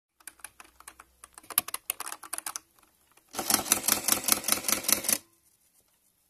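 Keys being typed: irregular single clicks at first, then a fast, dense run of keystrokes lasting about two seconds, stopping abruptly.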